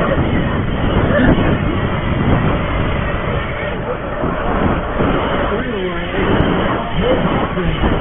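Steady rushing wind on the microphone and riding noise from a BMX bike raced over dirt rollers and onto a paved berm.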